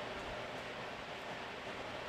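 Room tone: a faint, steady, even hiss with no distinct events.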